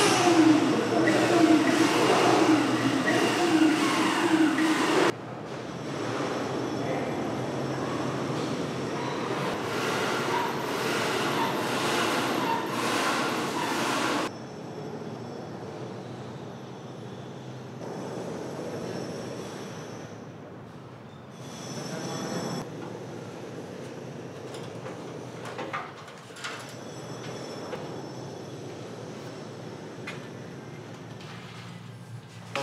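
Construction-site sound in abrupt edited cuts: a loud power-tool motor whine with wavering pitch for about the first five seconds, then quieter work noise with occasional knocks.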